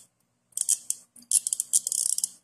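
Socket wrench ratchet clicking rapidly as its handle is worked back and forth, the pawl ticking over the gear in two quick runs starting about half a second in.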